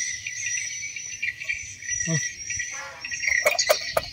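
Crickets chirping steadily and high, with a few sharp clicks a little after three seconds.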